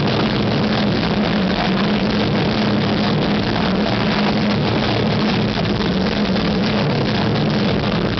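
Post-hardcore band playing live: a long, held, heavily distorted guitar chord over drums, loud and dense, with no singing.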